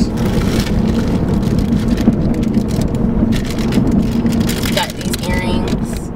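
Steady road noise inside a moving car's cabin, with crinkly rustling as a plastic bag is handled.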